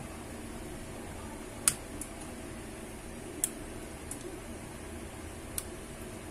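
Plastic latches of a Moto One Vision's inner plastic cover clicking free as a plastic spudger pries around its edge: three sharp clicks spaced roughly two seconds apart, with a few fainter ticks between, over a steady low hum.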